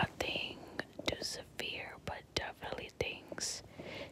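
Close-microphone whispered speech, broken by short, sharp clicks between the words.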